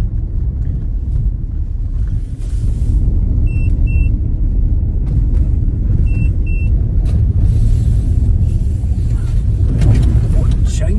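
Steady low rumble of a car driving on a gravel road, heard from inside the cabin. Two pairs of short high beeps sound over it, about three and a half seconds in and again about six seconds in.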